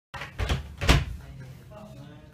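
An interior door knocking hard in its frame as it is jerked by the handle: two loud knocks about half a second apart, the second the louder.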